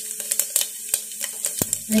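Cumin and mustard seeds sizzling in hot oil in a pressure cooker, with a dense run of crackles and pops as the seeds splutter.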